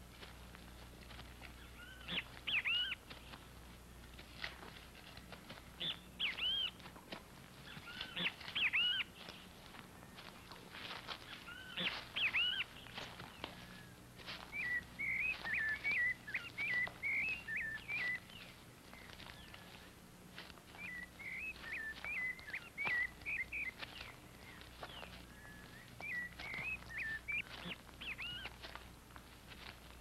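Birds calling outdoors: short chirps every few seconds, with spells of rapid twittering from about halfway through.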